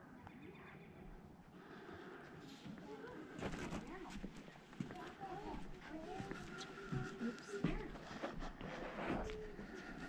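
Other visitors talking faintly in the background, with footsteps knocking on boardwalk decking from about three and a half seconds in.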